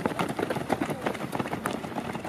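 Footfalls of a pack of runners on a dirt track: many quick, overlapping steps.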